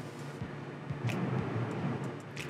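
The boat's inboard engines idling: a steady low hum under a faint hiss, with a few light ticks.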